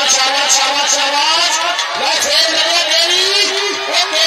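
A man's voice talking continuously without pause, commentary on the bout.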